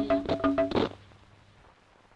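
Fijian action song: a group of voices singing held notes over sharp, evenly spaced percussive strokes. The song ends on a final stroke under a second in, followed by near silence.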